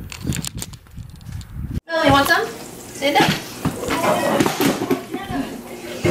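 Mostly people talking. The first two seconds hold only faint scattered clicks and rustling, which stop abruptly.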